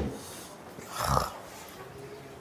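Dairy cow's moo ending as it begins, then a short low breathy sound from a cow about a second in.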